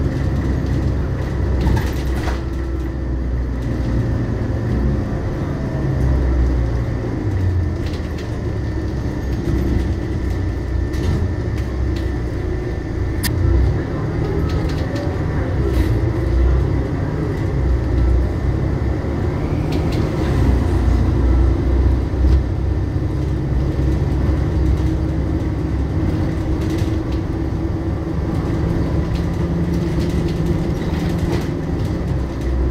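Inside a Volvo B12BLE bus under way: its rear-mounted six-cylinder diesel engine running, the pitch of its rumble shifting up and down as the bus accelerates and eases off, with road noise.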